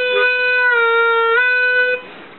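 TurboSlide diatonic harmonica (a Seydel Silver with stainless steel reeds) playing a held 3-hole draw note. Partway through, the note bends down about a semitone and then returns to pitch, showing a bend between the chart's notes, before stopping just short of the end.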